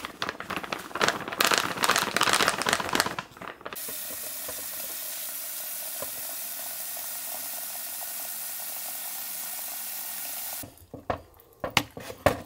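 A foil packet rustling and crinkling as instant slime powder is poured from it into a plastic bucket, for about three seconds. Then a kitchen tap runs steadily into the bucket in a stainless steel sink, in an even hiss that stops suddenly, followed by a few light knocks.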